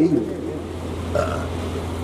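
A man's amplified voice: a word trailing off at the start, then a pause broken by a brief low vocal sound about a second in, over a steady low electrical hum.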